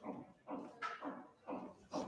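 Handheld eraser wiped back and forth across a whiteboard, a rubbing swish about twice a second.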